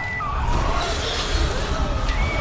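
Horror-film soundtrack: a deep low drone under wavering, shrill tones, with a rising hiss coming in about halfway through.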